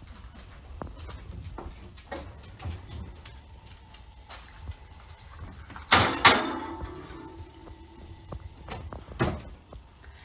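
Foil-covered baking dish pushed into the oven with a loud clatter on the metal oven rack about six seconds in, followed by a metallic ring that dies away over a couple of seconds. Light handling clicks come before it, and the oven door knocks shut a little after nine seconds.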